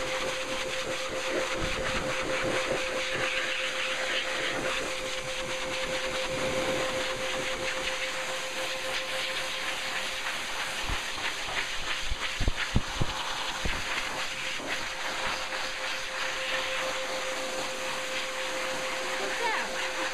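Blow dryer running steadily, a rush of air with a steady whine, blowing over a wet cocker spaniel's coat, with a few low thumps of air buffeting the microphone a little past halfway.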